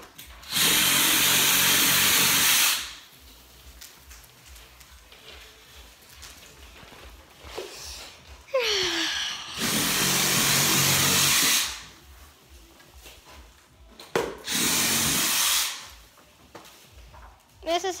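Handheld power saw cutting through the branches and trunk of a live Christmas tree, in three bursts of about two seconds each, with quieter pauses between them.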